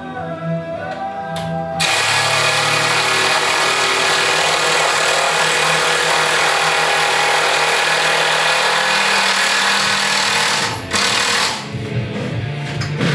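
A power tool runs steadily for about nine seconds, starting about two seconds in and stopping near the end, over rock music from a radio.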